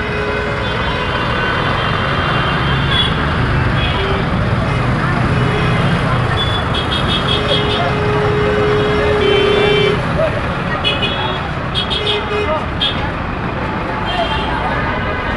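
Busy street traffic: bus and other vehicle engines running, with horns sounding. One long horn note comes about two thirds of the way through, and short high toots follow near the end.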